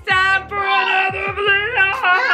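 A woman singing loudly and theatrically in long held notes that waver in pitch.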